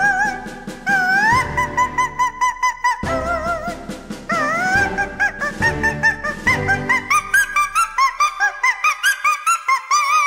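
Cartoon operatic soprano singing a high wordless passage with wide vibrato over an orchestral accompaniment. In the second half she breaks into quick, short rising notes, about four a second.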